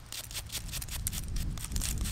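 A stiff little brush scrubbing soil off a small dug-up metal ornament, making a quick, irregular run of short scratches, several a second.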